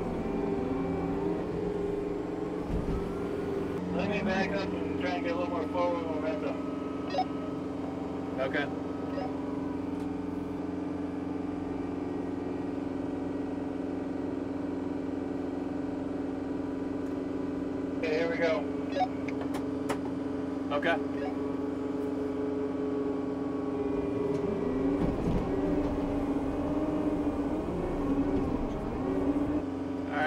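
Diesel engine running at a steady speed throughout, with snatches of faint, indistinct talk over it a few seconds in and again past the middle.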